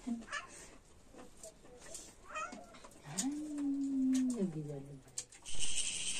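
A single drawn-out animal call about three seconds in, lasting nearly two seconds: it rises, holds, then drops lower at the end. Faint clicks of hands and steel plates during a meal come through around it.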